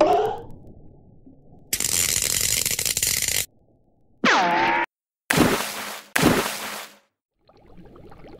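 Cartoon sound effects of an electric eel's shock: a steady buzzing zap of about two seconds, then a short pitched sound falling in pitch and two short noisy bursts, before it goes quiet.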